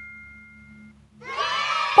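The ringing tail of a chime sound effect fades away over the first second. A little over a second in, a dense cheering sound effect swells up as the word is completed.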